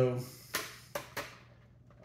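Three short, sharp plastic clicks as the rear height adjustment of a hard hat's suspension is pushed all the way in.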